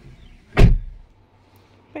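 A single heavy thump just over half a second in, dying away quickly.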